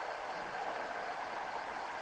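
Steady faint hiss of background noise, a pause with no speech and no distinct event.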